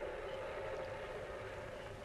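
Faint steady hiss with a low hum, the background noise of an old film soundtrack between music and dialogue.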